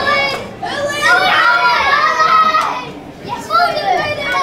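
Young children shouting and calling out in high, excited voices, loudest in a long stretch from about a second in until nearly three seconds.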